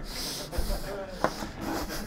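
Rubbing and rustling handling noise with a single sharp click about a second and a quarter in, as a plug is pulled out of a socket.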